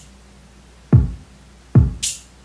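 808 drum-machine kick playing a simple heartbeat beat: two deep thumps, one about a second in and one near the end, each dropping fast in pitch. It plays dry, without its delay trail.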